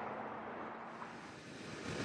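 Faint steady background noise with a low hum, growing slightly louder near the end.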